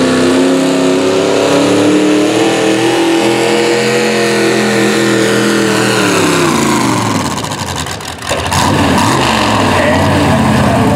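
V-8 engine of an antique Ford pulling tractor running hard at high revs under the sled's load. Its pitch sags slowly, then drops away sharply about eight seconds in with a brief dip in loudness, before the engine note picks up again.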